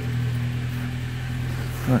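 1998 Saab 9-3 SE's engine idling with a steady, even hum.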